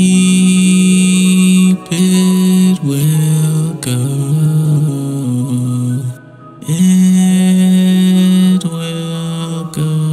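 Music from an emo indie song: long held low notes that shift in pitch every second or two, breaking off briefly about six seconds in.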